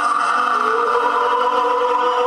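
Live electronic band music: sustained synthesizer chords held steady, with a new note gliding up into the chord about half a second in.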